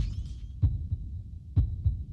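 Heartbeat sound effect: low thumps in lub-dub pairs, about one beat a second.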